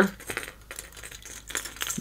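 A few light metallic clinks and ticks of the treble hooks and split rings on a flap-tail musky topwater lure as they are handled and popped out.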